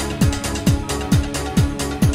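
Early-1990s trance music: a four-on-the-floor kick drum at about 133 beats a minute, hi-hats between the kicks, over a held synth tone.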